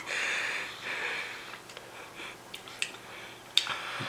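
A man drinking vinegar brine straight from a glass jar of pickled pigs' feet: two hissy breaths or slurps in the first second and a half, then quieter sips, with a short sharp sound near the end.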